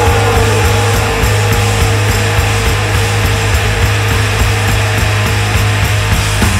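Heavy psychedelic hard rock with a dense, noisy wall of distorted electric guitar over a steady low bass drone, without vocals; a held note slides down in pitch at the start.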